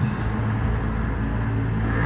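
A steady low rumble and hum with a faint hiss, unchanging throughout.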